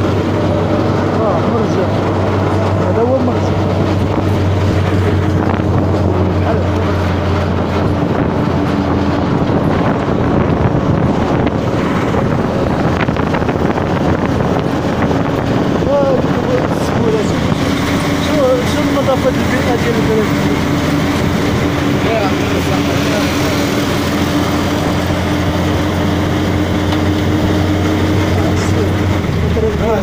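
Motorcycle engine running steadily while riding at a constant speed: a continuous low hum, its note shifting only slightly now and then.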